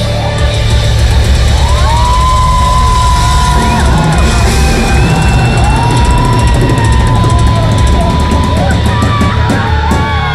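Heavy metal band playing live at full volume: drums, distorted guitars and bass, with long held high notes that bend at their ends over the top.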